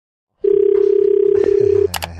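A steady single-pitch telephone line tone, starting about half a second in and stopping shortly before a sharp click at the end.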